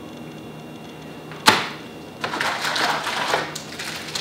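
A single sharp click about one and a half seconds in, then irregular crinkling and rustling of a plastic packaging bag holding a test lead.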